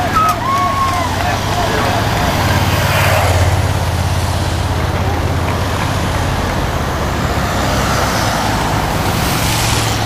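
Race team support cars with bikes on their roof racks driving past close by, a steady engine hum and tyre noise that swells as one car passes about three seconds in and another near the end. Spectators shout in the first second.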